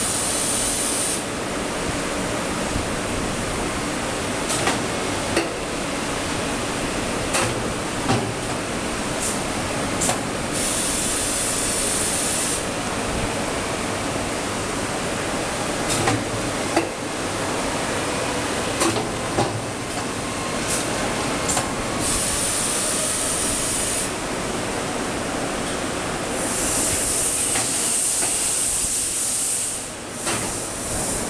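Automatic PET cylinder lid gluing machine running: a steady mechanical noise with scattered sharp clicks and knocks. A high hiss comes in bursts a few seconds long several times, the longest near the end.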